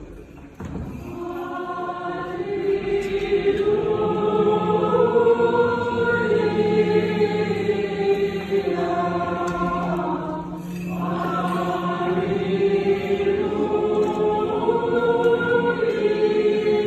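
A choir singing Orthodox liturgical chant in a reverberant church. Several voices move over a low note held steadily beneath them for the first ten seconds; the singing pauses briefly and resumes.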